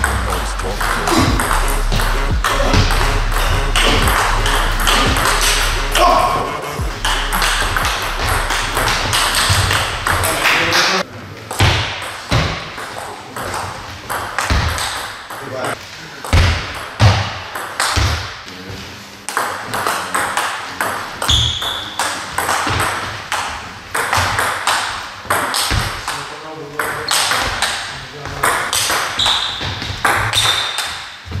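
Table tennis ball in play: sharp clicks of the celluloid/plastic ball off the bats and the table top in quick rallies. For about the first ten seconds rap music with a deep bass line plays under the clicks, then stops, leaving the clicks and hall sounds alone.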